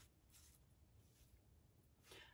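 Near silence: room tone, with faint rustles of a paper word card being slipped into a plastic pocket chart.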